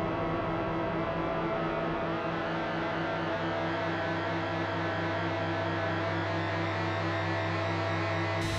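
Electronic drone music from synthesizers: a sustained low drone with layered steady tones above it, held at an even level.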